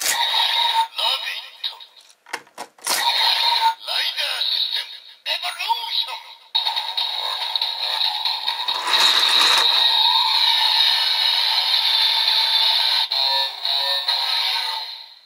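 A Bandai DX Evol Driver toy belt's electronic voice and sound effects play as Evol Bottles are clicked into it, followed by continuous transformation standby music. All of it comes from the toy's small speaker, so it sounds thin with no bass.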